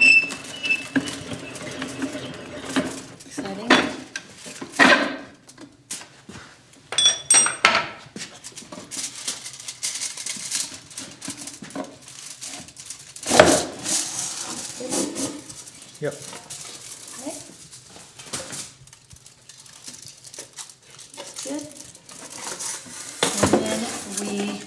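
Metallic clinks, knocks and rattles as a side-bending jig is taken apart: its screw rams are backed off and the spring-steel sheet is lifted away from the bent side. There are two brief ringing metal pings about seven seconds in, and a sharp knock about halfway through.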